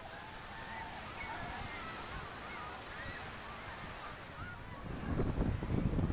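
Gulls calling, many short, wavering calls overlapping one another. About five seconds in, a louder low rumble comes in underneath.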